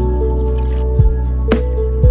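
Lofi hip hop instrumental beat: sustained mellow chords over a bass line, with a kick drum about a second in and a snare hit about halfway through.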